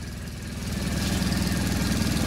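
Mercedes-Benz Vario 814D mini coach's four-cylinder diesel engine idling steadily with an even low beat, heard from inside the cab; it gets louder about half a second in.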